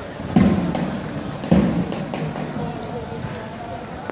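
Pedestrian street ambience: voices of passers-by talking in the background, with two dull thumps, one about half a second in and one about a second and a half in.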